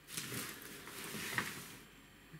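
Bundle of soft dark-gray monofilament fishing net rustling irregularly as it is handled and shifted by hand.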